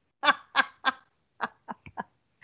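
Laughter: a run of short, separate bursts about a third of a second apart, with a few fainter, shorter ones near the end.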